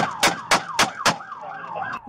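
Five handgun shots about a quarter of a second apart, fired from inside a patrol car's cabin out through its own windshield. Underneath, the car's siren runs in a fast yelp.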